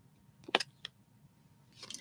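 Tarot cards being handled on the table: one sharp click about half a second in, then a couple of fainter ticks.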